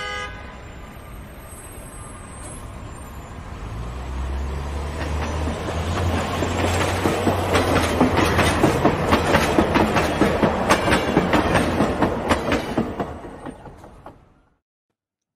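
Elevated rapid-transit train, a Chicago 'L' train, approaching and passing on curved track. It builds from a low rumble to a dense, fast clatter of steel wheels over rail joints, then fades away near the end. A brief horn-like toot sounds at the very start.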